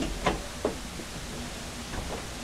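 A few light knocks and clicks, three in the first second and one near the end, over a steady hiss.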